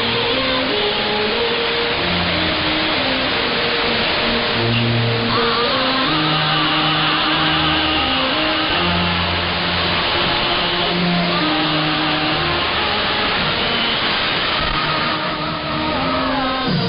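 Music from China Radio International's shortwave AM broadcast on 15.100 MHz, received on a software-defined radio: a melody of held notes stepping up and down, under a steady hiss of shortwave static. The sound is cut off above about 5 kHz by the AM channel's narrow bandwidth.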